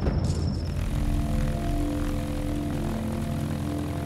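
Propeller aircraft engine droning steadily, following a low rumble in the first second.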